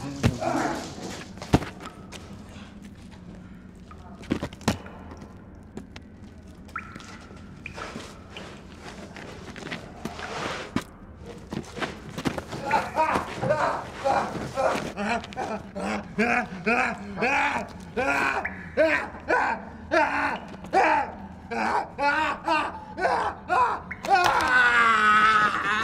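A few sharp thuds in the first five seconds. Then, through the second half, a man's voice in a run of short, strained vocal outbursts, about two a second.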